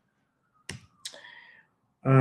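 Two short, sharp clicks close to the microphone, about a third of a second apart; the second is softer and trails off briefly. Otherwise near silence.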